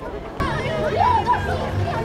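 A group of children chattering together; about half a second in the sound jumps louder, with lively voices over a low steady hum.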